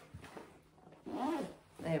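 Zip on a Manduca XT baby carrier's body panel being drawn closed in a short, faint zipping rasp about half a second long, joining the lower section of the panel to the top section to lower the panel height.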